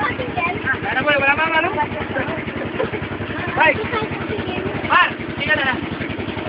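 Motorized outrigger boat (bangka) engine running steadily with a fast, even putter, and voices calling out over it a few times.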